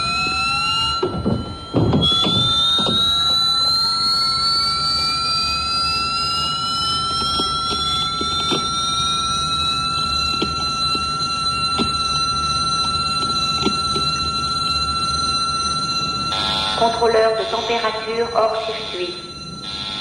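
Electronic alarm tones from a control-room console: a steady high whine with several tones gliding slowly upward in pitch, then, about three-quarters of the way in, a choppy pulsing pattern. The alarm signals a failed temperature controller and a system heading for shutdown.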